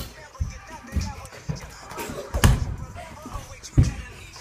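Irregular heavy thuds of feet running and landing on a hardwood floor and gym mat, the loudest about two and a half seconds in and another just before the end. Faint music and voices run underneath.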